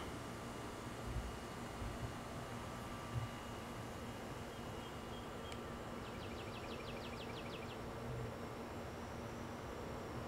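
Faint, steady outdoor evening ambience. A little past halfway comes a short, rapid trill of about ten high, evenly spaced notes lasting under two seconds.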